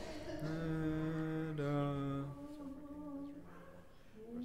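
Unaccompanied Orthodox liturgical chant: voices hold long, slow notes, stepping down in pitch about one and a half seconds in and fading away near the end.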